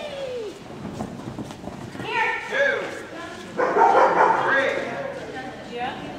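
A dog barking in a large indoor arena, in a burst about two seconds in and again more loudly from about three and a half to five seconds, with voices around it.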